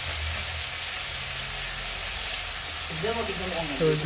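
Chicken pieces sizzling steadily as they fry in a wok over a wood fire.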